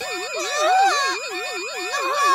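Cartoon sound effect of a shop's anti-theft security gate alarm going off, a siren warbling up and down about four times a second with a fast high beeping over it. The gate is signalling an unpaid video game in the boy's bag.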